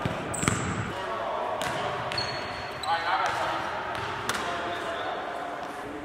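Basketball hitting the rim and bouncing on a hardwood gym floor: a loud thud about half a second in, then a few lighter knocks, echoing in the large hall, with voices in the background.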